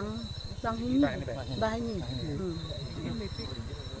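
A woman talking, with night insects chirping in a steady high tone behind her voice.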